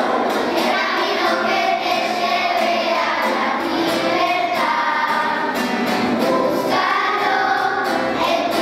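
Children's choir singing together, unaccompanied as far as the material shows, with the voices continuing steadily.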